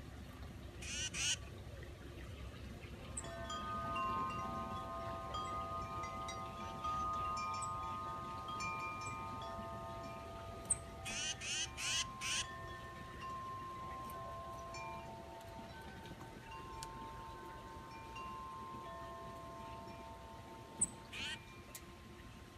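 Wind chimes ringing in the breeze: several clear, overlapping tones that sound and slowly fade, starting a few seconds in. Short harsh bird calls break in about a second in, in a quick run of four or five about halfway, and once more near the end, with a few thin high chirps between.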